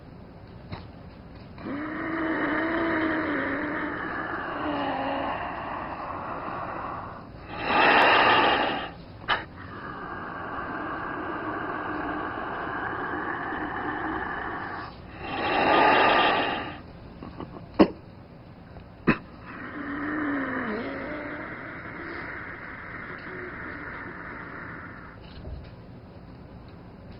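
A man breathing deeply and noisily as he goes into a channeling trance: long drawn breaths carrying a low voiced tone, broken twice by short, loud, forceful exhales. Two sharp clicks come a little past the middle.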